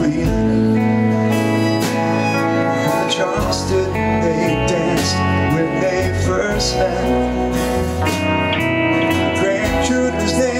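A live folk-rock band playing an instrumental passage between sung lines: acoustic and electric guitars with a bowed fiddle over bass and steady drum hits.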